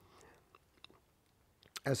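A quiet pause in a man's speech: faint room tone with a few small clicks around the middle, then his voice starts again near the end.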